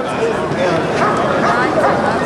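A dog barking several times over the chatter of onlookers.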